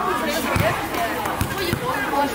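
Basketballs bouncing on paving, three dull thumps, amid children's voices and chatter.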